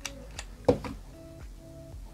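Soft background music, with a few short sharp clicks of a small plastic earbud being pulled out of its magnetic charging case, the loudest about two-thirds of a second in.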